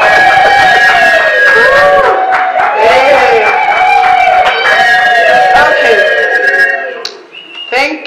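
A woman's voice over the public-address system in long rising-and-falling phrases, stopping about seven seconds in.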